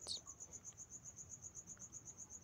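A cricket chirping steadily in the background, a faint high trill of about a dozen even pulses a second.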